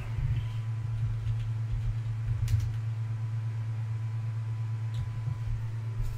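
Steady low hum with a few faint sharp clicks, typical of computer keyboard keys as a search term is typed.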